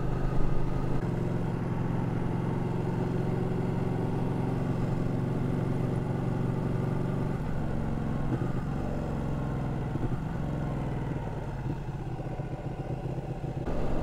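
Ducati 1299 Panigale's L-twin engine running at a steady cruise, its note changing about seven seconds in and getting a little quieter near the end.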